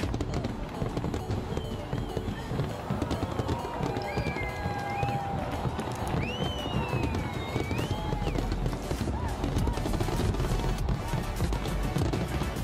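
Large fireworks display, a dense stream of crackling and popping bursts, with a few shrill whistling glides in the middle and crowd voices and music underneath.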